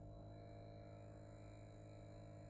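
Near silence: a faint, steady low hum with no other events.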